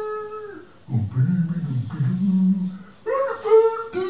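A puppeteer's voice in a character voice: a high, drawn-out call trails off at the start, a lower wavering voice runs for about two seconds, and a second long high call begins near the end.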